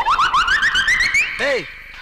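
A warbling comic sound effect: a fast run of short rising chirps, about eight a second, climbing steadily in pitch for about a second, then held briefly as a steady whistle. A short rising-and-falling lower note comes in partway through.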